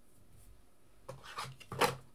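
Trading cards being handled: a few short rubbing sounds starting about a second in, the loudest just before the end.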